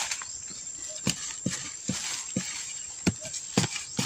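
Metal digging blade striking into dry, hard soil: about six separate chopping knocks, roughly every half second, with a short pause near the middle.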